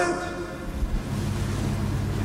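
Steady low hum from the microphone and sound system, with a soft low thump about three-quarters of a second in.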